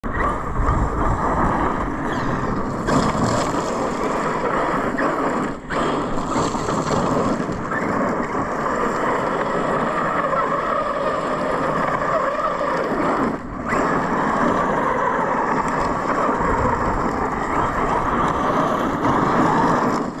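Electric RC truck driving hard on loose gravel: motor whine under the steady hiss and crunch of spinning tyres spraying stones. The sound drops out briefly twice.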